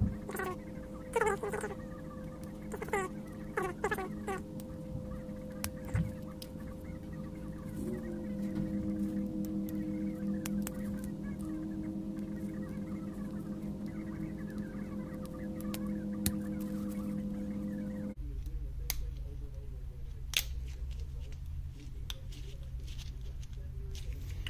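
Steady machine hum with several tones, under scattered clicks and short squeaks from gloved hands handling the plastic cell holder of a lithium-ion tool battery pack. About eighteen seconds in, the hum stops abruptly and a lower hum takes over.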